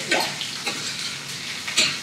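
Metal spoon stirring diced vegetables and butter in a stainless-steel skillet, with a few brief scrapes against the pan, over a steady sizzle of frying.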